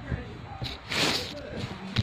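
Faint background voices, with a brief rustling noise about a second in.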